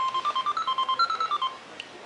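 Toy cash register playing an electronic tune of quick, short beeps that step up in pitch and back down, lasting about a second and a half, followed by a small click.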